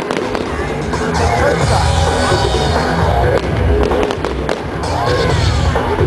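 Music with a heavy, rhythmic bass accompanying an aerial fireworks display, with several sharp firework bangs and crackling bursts heard through it.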